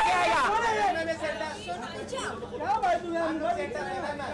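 Overlapping chatter of several voices talking and calling out at once, none of it clear speech.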